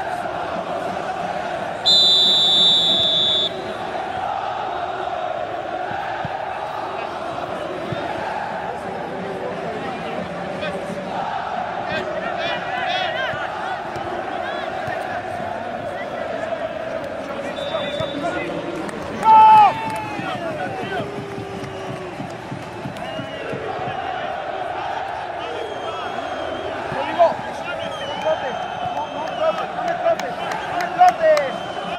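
A referee's whistle blown once for about a second and a half, a couple of seconds in, signalling the kickoff, over steady voices from spectators and players. A loud shout about two-thirds of the way through.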